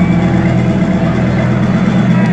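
Electronic dance music played loud over a club sound system: a sustained low bass drone with steady held synth tones above it.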